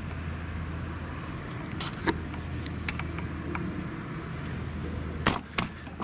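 Claas Jaguar 970 forage harvester chopping maize, heard as a steady low drone. A few sharp knocks cut through it, once about two seconds in and twice in quick succession near the end.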